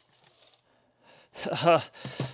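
Near silence, then about one and a half seconds in, a short laugh.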